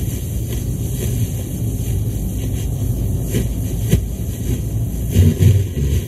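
Car heard from inside the cabin while driving: a steady low rumble of engine and road noise, with a couple of brief knocks near the middle and louder low thumps near the end.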